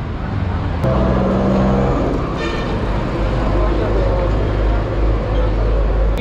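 Busy city street traffic, with a heavy vehicle's engine running close by in a steady low drone from about a second in. A short high beep sounds briefly near the middle.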